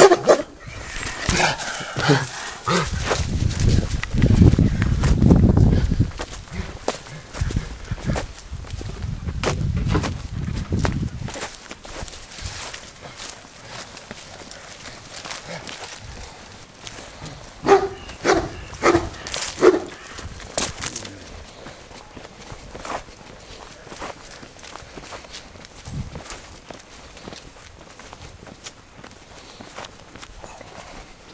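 A dog barking about five times in quick succession a little after halfway, over footsteps and movement on grass. Earlier, two stretches of low rumbling handling noise from the moving camera are the loudest sound.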